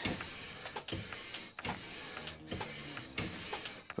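Metal tailstock foot plate being lapped by hand on 240-grit abrasive paper glued to a mini lathe bed: a steady rasping scrape in back-and-forth strokes, with a short break at each change of direction about every 0.8 seconds.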